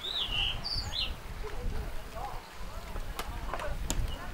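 Small birds chirping, a few short rising-and-falling calls in the first second, over the faint chatter of people and a steady low rumble. Two sharp clicks near the end.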